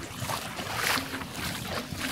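Wind on the microphone over small waves lapping at the shoreline, the noise swelling briefly louder about a second in.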